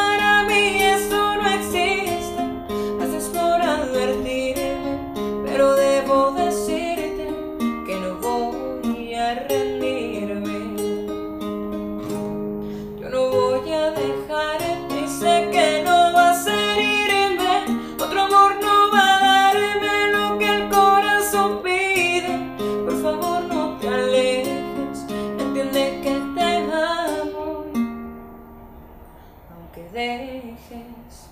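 Nylon-string classical guitar played with a woman singing a slow ballad over it. The music dies down near the end.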